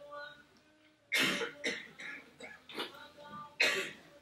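A person coughing: two loud coughs about two and a half seconds apart, with smaller coughs or throat-clearing between them.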